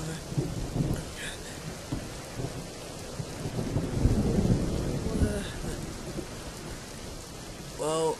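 Steady rain ambience with low rolls of thunder. The rumble swells about four seconds in and then eases.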